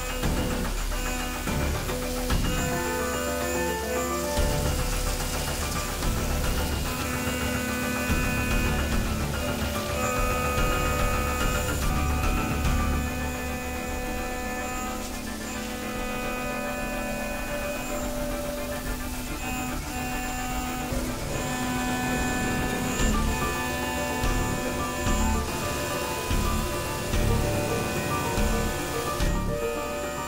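Background music: a slow melody of held notes, with a steady hiss underneath.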